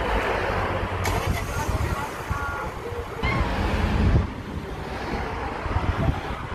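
Wind buffeting a phone microphone outdoors, a gusty low rumble, with a few faint short high sounds in the middle.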